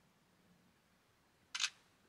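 Oppo Reno 10 Pro smartphone playing its camera shutter sound once, about one and a half seconds in, as a selfie photo is taken; near silence before it.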